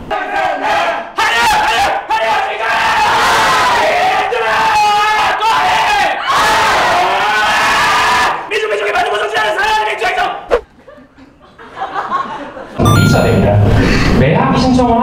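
A man belting long, loud, high-pitched vocal notes with wavering pitch, half singing and half shouting, in a large room. The voice breaks off after about ten seconds.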